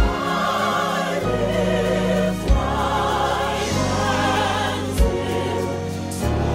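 Gospel choir singing sustained chords with vibrato, accompanied by trumpet, flute, strings and French horn over a bass line. A deep beat falls about every two and a half seconds.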